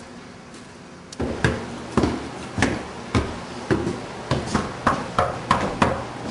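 A run of about a dozen hard thuds, roughly two a second, coming closer together near the end.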